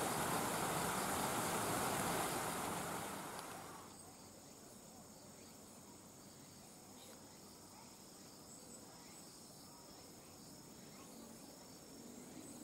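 A loud, even rushing noise that fades away about three seconds in, leaving faint, steady high-pitched insect chirring.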